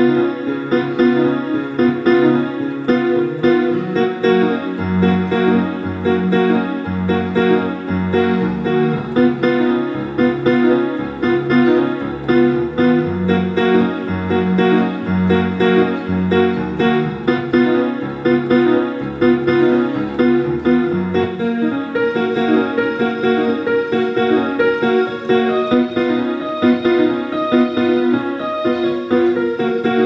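Piano playing a quick, busy finger exercise, a dense run of notes throughout. A low bass part comes in about five seconds in and drops out around twenty seconds in.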